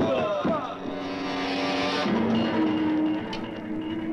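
Film soundtrack: shouting, crying voices in the first second, then the score's held low notes.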